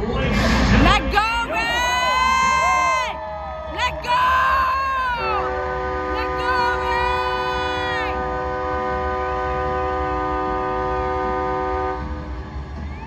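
Arena sound system playing the team's intro. Sweeping, bending pitched sounds fill the first few seconds, then a chord of steady tones is held from about five seconds in, like a long horn blast.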